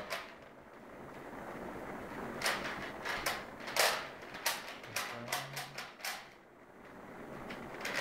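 Plastic 3x3x3 Rubik's cube being turned by hand: quick clicks and clacks as the layers snap round, coming in bunches. The clicks start about two seconds in and pause briefly near the end.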